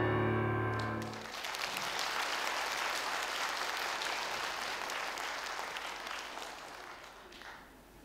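A grand piano's final chord rings and stops about a second in. An audience then applauds, and the applause fades away toward the end.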